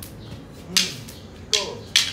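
Short wooden practice sticks striking each other in a stick-fighting drill: three sharp clacks, one about three-quarters of a second in and two close together near the end, with short grunts alongside.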